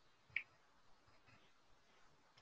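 Near silence, broken by a single short click about a third of a second in.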